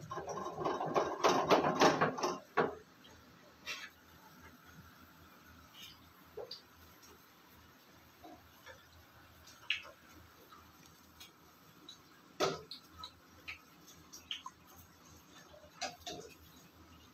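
Rustling, clicking handling noise for the first two and a half seconds, then scattered faint clicks and knocks over quiet room noise, one louder knock about twelve seconds in.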